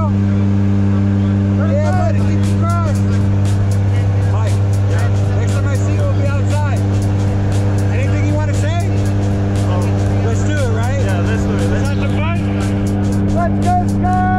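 Steady drone of a jump plane's engines and propellers heard inside the cabin in flight: a loud low hum with a constant pitch, with muffled voices over it.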